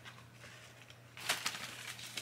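Faint rustling and a few light clicks of a small gift package being handled, starting a little over a second in after a moment of quiet.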